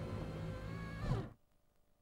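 A single held note with several overtones, sustained and then cut off abruptly a little over a second in, leaving near silence.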